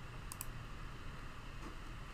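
A couple of quick, faint computer keyboard clicks about a third of a second in, over a steady low hum.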